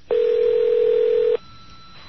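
A telephone ringing tone heard down the phone line as a call is placed: one steady electronic tone lasting just over a second that cuts off suddenly, followed by a faint, higher steady tone.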